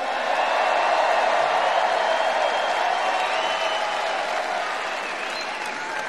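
A large crowd applauding and cheering, with scattered shouts, swelling in the first second and slowly fading.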